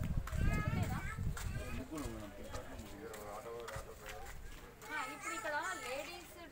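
Voices in an open street: people talking, with high, wavering calls about half a second in and again near the end.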